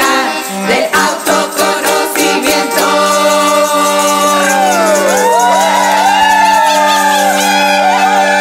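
Several women's voices singing over a held, droning chord. Rattling percussion clicks fill the first three seconds. From about halfway, the voices break into sliding, whooping calls that glide up and down.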